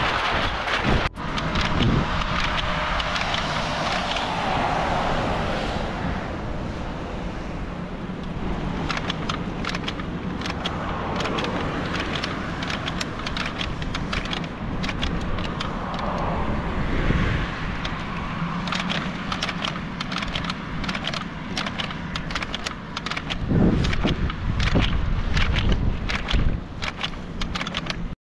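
A bicycle ridden along a road, with wind rushing over the microphone and a bundle of crushed aluminium cans strapped to the bike crackling and rattling in many quick clicks.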